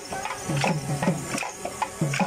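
Rhythmic clacking of wooden kaliyal dance sticks (kalikambu) struck together, about three or four sharp strikes a second. Under them runs low, pitched percussion whose strokes drop in pitch.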